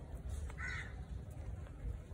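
A single short bird call a little over half a second in, over a steady low background rumble.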